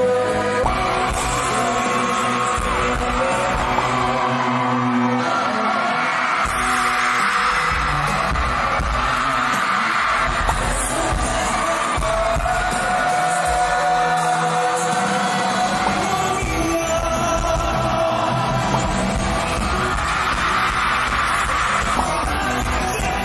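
A live pop-rock band playing with a male lead singer, heard in a concert hall.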